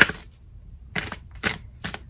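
Tarot cards being shuffled by hand: a sharp slap of the cards right at the start, then three shorter card sounds about half a second apart.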